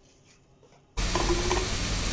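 Silence for about the first second, then a steady hiss of room noise cuts in suddenly and holds.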